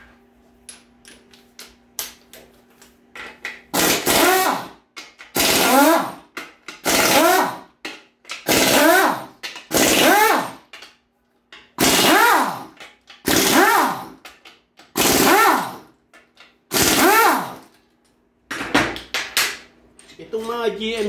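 A pneumatic wrench runs in about nine short bursts, roughly one every second and a half. Each burst spins up and winds back down in pitch as it loosens bolts inside an automatic transmission's bellhousing.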